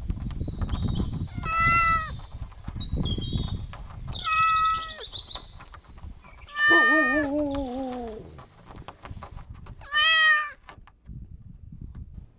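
Domestic cat meowing four times, a few seconds apart; the third meow is the longest, with a lower, wavering pitch.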